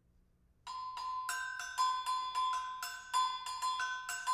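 Tuned mallet percussion struck in a quick run of bright, ringing notes, starting about two-thirds of a second in and moving mostly between two pitches.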